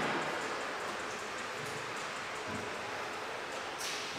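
Steady hiss of room noise, with a brief rustle near the end.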